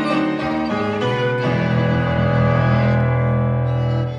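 Violin and stage piano playing together live. About a second and a half in, they settle onto a long held note over a sustained low bass.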